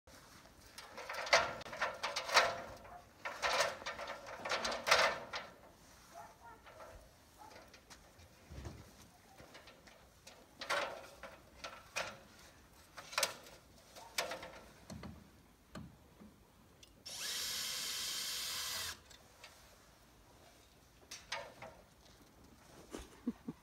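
A power drill running in one steady burst of about two seconds, near the end. Before it come clusters of sharp knocks and clatter.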